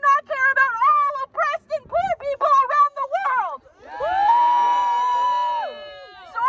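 A woman's voice shouting through a handheld megaphone, harsh and amplified. About four seconds in comes one long held shout lasting nearly two seconds that rises at the start and drops away at the end.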